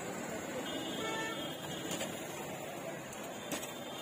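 Busy street-stall bustle of voices with music underneath, and two sharp knocks, about two and three and a half seconds in, from a knife cutting toasted sandwiches on a wooden board.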